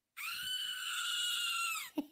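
Screaming-goat novelty toy pressed once, playing one long, high goat scream of nearly two seconds that holds an even pitch before cutting off.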